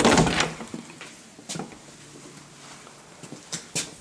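Interior door being opened: a loud burst of noise at the start, then a few sharp clicks about one and a half seconds in and again near the end.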